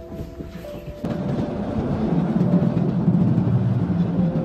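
Soft music with held notes. About a second in, a louder, dense low rumble takes over and keeps going.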